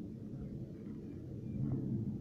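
Low, steady background hum, with faint scraping from a plastic scraper drawn across royal icing on a stencil.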